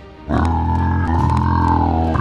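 A loud, low buzzing drone starts about a quarter second in and holds at one steady pitch: the sound effect for the giant toy bug flying and buzzing.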